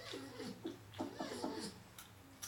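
A North American porcupine making small pitched calls as it gnaws on a piece of raw sweet potato. There is one falling call at the start and a quick run of short calls about a second in, with crisp chewing clicks between them.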